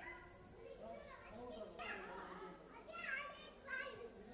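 Voices talking, with high-pitched children's voices among them.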